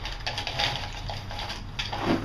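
Lumps of biochar clattering and crunching against each other as a magnet in a plastic cup is stirred through them in a plastic tub: a quick, irregular run of small dry clicks and scrapes.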